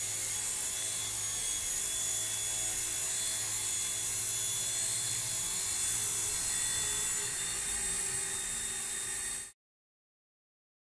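Genius CP V2 micro RC helicopter running, its electric motor and rotor giving a steady high whine with a low hum under it. The sound cuts off suddenly near the end.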